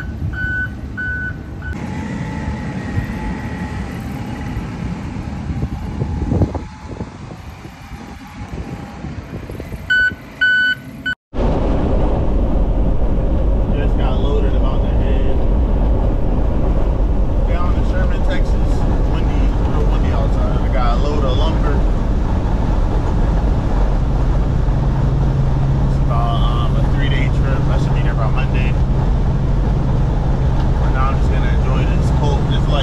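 A backup alarm beeping briefly near the start and again about ten seconds in, over engine rumble. After an abrupt cut, the steady engine and road noise of a Peterbilt 379 semi truck at highway speed, heard from inside the cab, with a steady low engine hum settling in for the last few seconds.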